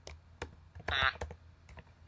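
Light, irregular clicking of a computer keyboard being typed on, with a brief voiced sound, like a short hum, about a second in.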